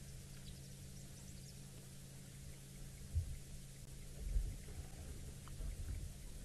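Quiet bush ambience: a steady low hum runs under faint high chirps in the first second or so. A few dull low thuds come about three and four seconds in.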